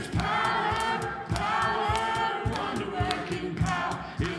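Worship band and singers performing a song, several voices singing together over a steady drum beat.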